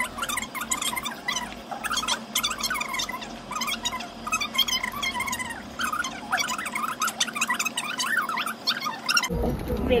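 Indistinct chatter of several people talking at once in a crowded room, with scattered small clicks and knocks; the sound cuts off abruptly about nine seconds in.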